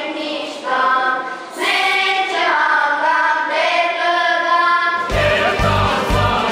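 A children's choir singing phrases of held notes. About five seconds in, the sound cuts to a larger choir with accompaniment that has a strong, pulsing low beat.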